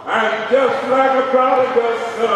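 A man preaching into a handheld microphone in a chanted, sung-out cadence, drawing his words out on long held pitches.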